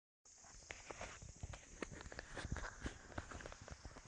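Footsteps crunching and knocking on dry grass and stony ground, irregular and several a second, over a steady hiss.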